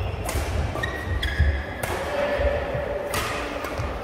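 Badminton rackets striking a shuttlecock about four times in a fast doubles rally, each hit a sharp crack, with short high squeaks from court shoes on the mat, in an echoing hall.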